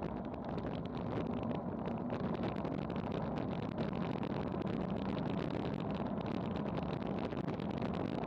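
Steady rush of wind buffeting a bike-mounted action camera's microphone on a fast road-bike descent at about 30 mph.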